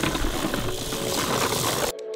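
Steady rushing, gritty noise of a push broadcast spreader being wheeled over dirt while it spreads grass seed. Just before the end it cuts off abruptly and music with plucked notes starts.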